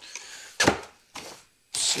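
Cardboard packaging being handled: a light rub of cardboard, then one sharp knock about a third of the way in as a cardboard packing tray is pulled from the box and set down.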